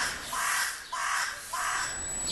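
A crow cawing, several calls in a row a little over half a second apart.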